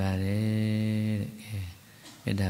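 A Buddhist monk's voice chanting, holding one long steady note for just over a second before trailing off, followed by a brief low murmur.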